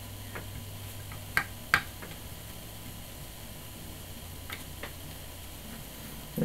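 A few small, sharp clicks and ticks of small screws and a precision screwdriver being handled against a plastic action-camera body, the two loudest close together about a second and a half in, over a faint steady hum.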